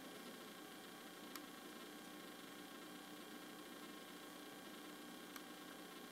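Near silence: the room tone of a quiet hall, a faint steady hiss with two faint clicks, one early and one near the end.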